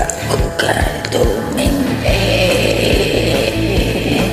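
Rock backing track playing without vocals: a steady drum beat under electric guitar.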